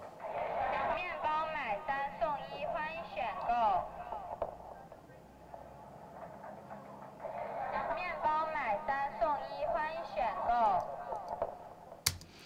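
A vending machine's recorded voice announcement in Chinese, captured on an iPhone and played back soloed through heavy EQ with the middle scooped to sound like a telephone, plus tape delay and distortion. The voice is thin and band-limited and comes in two phrases with a pause of a few seconds between them.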